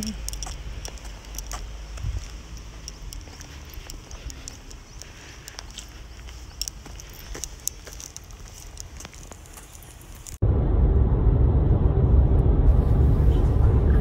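Faint outdoor ambience with scattered clicks, then, about ten seconds in, a sudden jump to loud, steady low road rumble of a car driving at highway speed, heard from inside the cabin.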